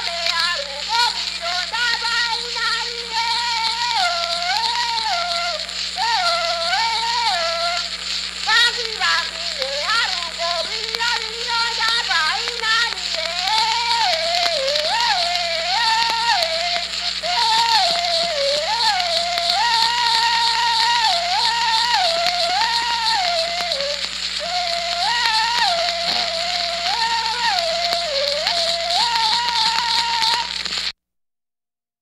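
Banuni polyphonic yodel sung in the Nasioi language: voices flip back and forth between two pitches in a repeating pattern, with a lower voice part beneath and a passage of sliding calls about nine to thirteen seconds in. It is an early phonograph cylinder recording, with heavy steady surface hiss and a low hum.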